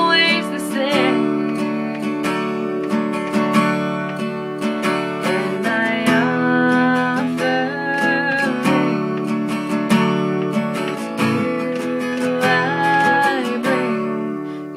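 A woman singing solo to her own strummed acoustic guitar, a Christian song.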